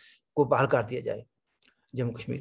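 Only a man's speech: a short phrase, then a pause with a couple of faint clicks.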